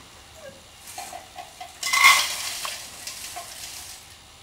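Dry cereal poured from a glass bowl into a measuring cup: a short rattling rush about two seconds in, with a light clink of glass.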